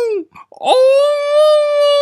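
A high-pitched human voice wailing in a long, drawn-out crying tone. One held note breaks off about a quarter second in, and after a short gap a second, slightly higher note rises in and is held steady.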